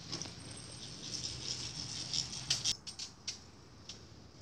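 Garments on hangers rustling and rattling as they are pushed along a metal clothes rail, with a few sharp clicks of hangers knocking together about two and a half to three and a half seconds in.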